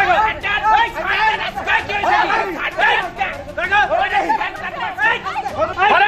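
Several people shouting over one another in a heated quarrel, with voices overlapping and no pause.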